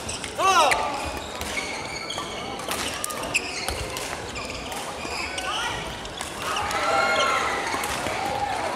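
Badminton doubles play on a wooden hall floor: shoe squeaks, a sharp one about half a second in, and racket hits on the shuttlecock, with voices echoing in the large hall.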